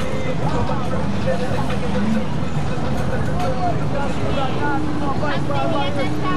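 Indistinct voices talking over a steady low rumble of street traffic, with a low steady hum joining in near the end.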